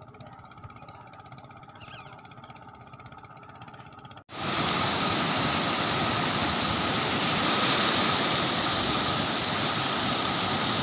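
Water rushing through the open gates of a concrete barrage, a loud, steady rush that starts suddenly about four seconds in. Before it there is only a faint low hum.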